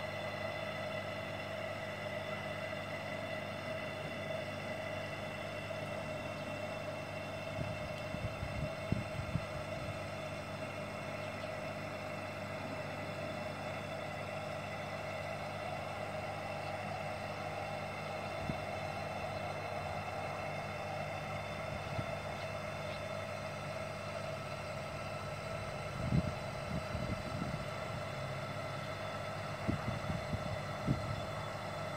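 Aquarium diaphragm air pump running with a steady hum, pushing air through a hose into an inflatable paddling pool. A few brief low bumps come about a third of the way in and near the end.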